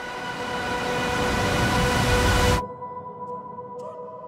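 Trailer sound design: a swelling rush of noise over a held drone chord grows louder for about two and a half seconds, then cuts off suddenly, leaving a quiet held tone. Near the end, short pulsing notes of the score begin.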